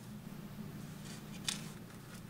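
Faint ticks and rubbing of a crochet hook working sock yarn, with one sharper click about one and a half seconds in, over a steady low hum.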